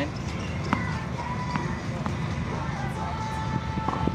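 Steady low background noise with a few light, sharp knocks, the clearest about three-quarters of a second in and another just before the end. A faint steady high tone comes in during the last second.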